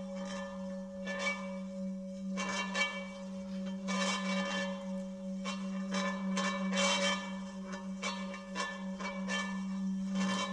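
Experimental live sound performance: a steady low drone runs under irregular bell-like metallic rings and scrapes from objects handled on the floor, a new stroke roughly every second.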